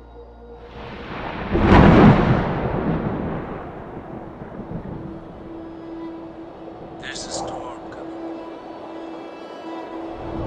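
A roll of thunder swells about a second in, peaks, and rumbles away over the next few seconds, laid over ambient music with a steady low tone.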